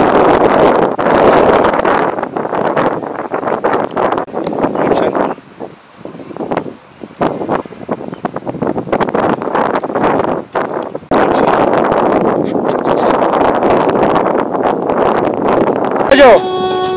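Wind buffeting the camera microphone in loud, uneven gusts that drop away briefly about six seconds in and again shortly before a renewed surge.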